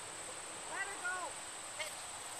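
A person's voice, a couple of short syllables rising and falling in pitch about a second in and one brief sound near the end, over a steady high-pitched hum.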